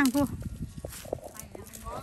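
A voice calls out a single word at the start, then footsteps and rustling on grass and dry leaves, with small irregular clicks and handling noise as the camera moves.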